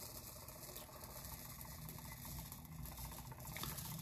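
Faint patter of fine silver glitter poured from a small cup onto a tumbler.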